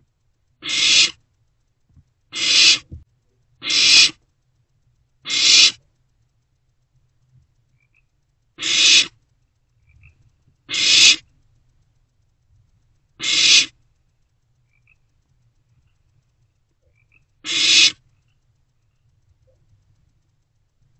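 Barn owlets giving the hissing 'snore' call, the food-begging call of barn owl chicks: eight hisses, each about half a second long, swelling and then cutting off, at uneven gaps of one to four seconds.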